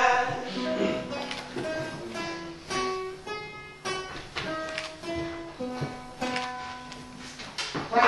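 Acoustic guitar played as a slow, halting line of single plucked notes at changing pitches, with small string clicks and knocks between the notes.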